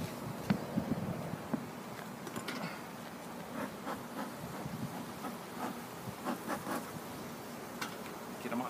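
Honey bees buzzing steadily around an open hive being worked with a smoker, with a few light clicks and knocks from the hive frames.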